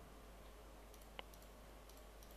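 Near silence, with a single short computer-mouse click a little past a second in, as an item is picked from a dropdown list.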